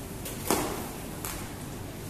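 A rope being handled: a short sharp slap about half a second in, then a fainter one a little later, over steady room hiss.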